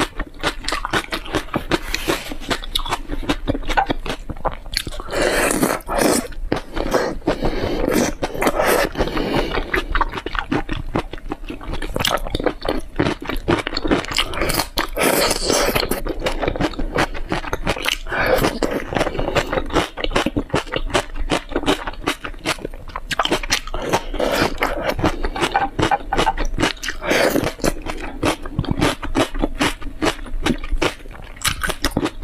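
Close-miked chewing and crunching of a spicy shrimp dish: a dense run of quick wet mouth clicks and crunches, picked up by a clip-on microphone at the collar.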